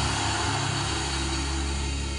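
Soft background music: a low sustained drone held steady under the pause in the prayer.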